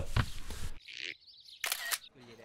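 Phone camera shutter sound effect, a short click-like burst near the end, after a softer sound about a second in.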